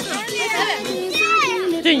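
Voices of children and adults talking and calling out over one another, with high-pitched children's cries.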